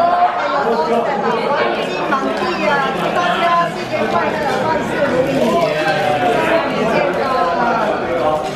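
Several people talking at once around a table: overlapping conversation and chatter, with no single voice standing out.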